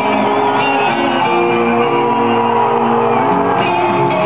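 Heavy metal band playing live with guitar-led music, recorded from the audience in a large arena, with crowd shouting over it.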